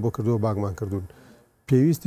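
Only speech: a man talking, breaking off for a short pause just after a second in before going on.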